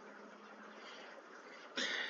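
Faint room hiss, then near the end a short breathy intake of breath from the narrator just before he speaks.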